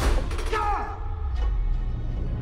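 Film-trailer score: a sudden loud hit at the start, then a low sustained drone, with a short falling voice-like sound about half a second in.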